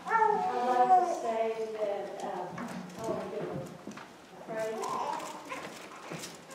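A fairly high-pitched voice speaking away from the microphone, its words indistinct, in a few short phrases with brief pauses.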